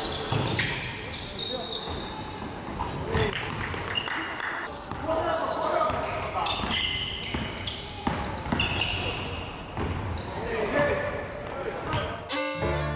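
Live basketball game on a hardwood gym floor: the ball bouncing, short high squeaks from sneakers, and players' voices calling out, all ringing in a large hall.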